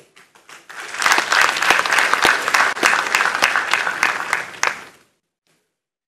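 Audience applauding after a speaker's point, building up over the first second and then cutting off suddenly about five seconds in.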